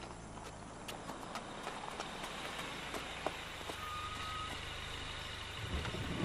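Quiet outdoor background noise with scattered light taps of footsteps. Just before the end a vehicle's low rumble comes in as a van pulls up.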